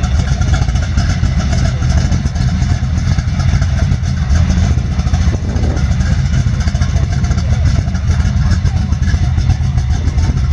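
Chevy II Nova SS engine idling steadily, a deep, even exhaust rumble heard from behind the car.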